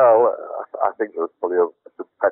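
Speech: a voice talking in short syllables.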